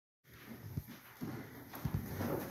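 Handling noise from the recording phone: a few soft, low thumps with a faint rustle as the phone is steadied.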